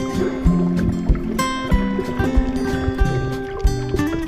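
Background music with held notes over a steady beat.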